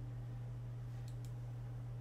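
A steady low electrical hum, with two faint clicks of a computer mouse a little after a second in.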